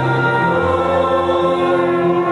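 Choir singing a hymn in long held chords.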